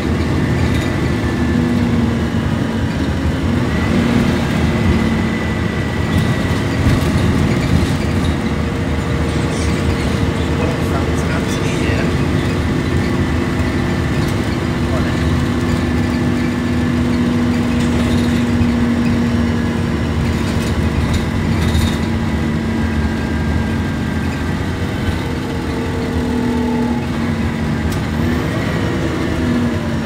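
Plaxton Centro single-deck bus heard from inside the passenger saloon while under way: steady engine and driveline drone over road rumble, several held tones in the drone shifting in pitch near the end.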